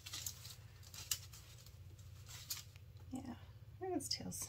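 Silicone mold being flexed and peeled off a cured epoxy resin casting: faint rustling with a few small sharp clicks, over a steady low hum.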